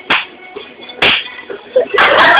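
Two sharp hand slaps about a second apart.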